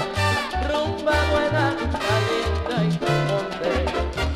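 A 1970s salsa orchestra recording playing from a vinyl record. A bass line in short, syncopated notes runs under dense pitched instruments.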